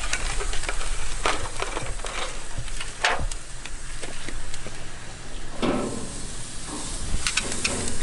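Whole salted porgy sizzling on hot, oiled grill grates, a steady hiss broken by scattered sharp crackles and clicks.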